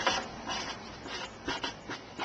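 Dry-erase marker writing on a whiteboard: several short strokes, one after another.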